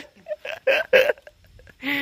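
A person's voice in short, quick bursts: about four brief sounds in the first second, then one longer one near the end.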